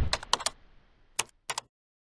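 Short keystroke-like click sound effects: a quick run of clicks in the first half second, then a single click and a close pair of clicks in the second half.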